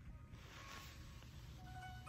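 Near silence: faint room tone right after music cuts off, with a few faint, soft steady tones near the end.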